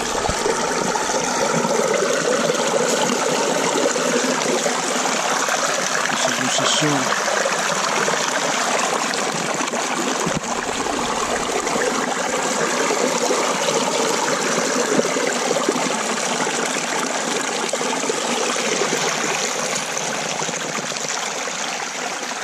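Water running steadily through a Dragonfly gold sluice box, washing over its expanded-metal riffles as gravel is slowly fed in.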